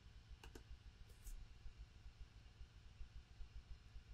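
Near silence with a few faint computer clicks: a quick pair about half a second in and one more just after a second.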